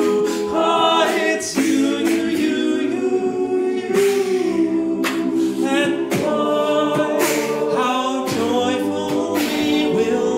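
Men's a cappella choir singing in close harmony, sustained chords under a lead voice sung into a handheld microphone.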